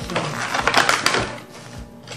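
Clear plastic accessory bags crinkling and rustling as they are handled, with small parts clicking inside, in a run of irregular crackles that dies down near the end; background music underneath.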